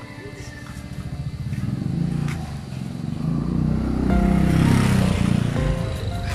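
Motor scooter passing close by, its engine getting louder to a peak about four to five seconds in, then starting to fade.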